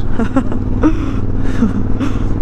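Suzuki V-Strom motorcycle engine running steadily while riding, under wind noise on the microphone, with short bursts of a rider's laughter in the first second.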